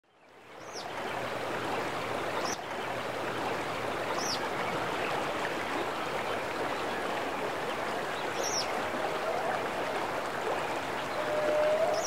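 Steady rush of running water that fades in over the first second, with a short high bird chirp every few seconds.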